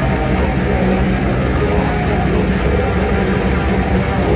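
Death metal band playing live: distorted electric guitars and bass over a drum kit, dense and loud throughout.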